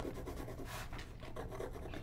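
Inktense pencil scratching and rubbing faintly on a painted paper art-journal page, in many quick short strokes.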